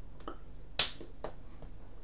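Hands striking each other while signing: one sharp slap a little under a second in, the loudest sound, among a few lighter clicks and taps.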